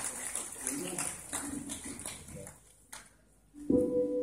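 Audience applause and voices die away, then a short hush. Near the end a guitar chord is struck through the PA and keeps ringing, the opening of the song.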